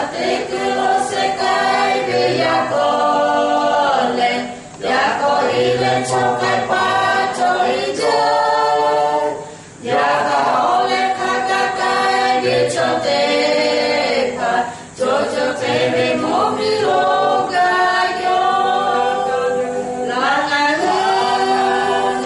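A small group of four voices singing a hymn unaccompanied from song sheets. The phrases are held, with a short break for breath about every five seconds.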